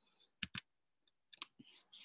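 Clicks at a computer, over near silence: two short sharp clicks about half a second in, then a few fainter clicks near the end.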